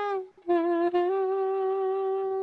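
Soprano saxophone playing a slow melody: a held note ends just after the start, there is a brief breath, then a new long note sounds and steps up slightly in pitch about a second in.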